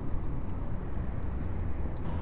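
Motorcycle engine idling with a steady low rumble.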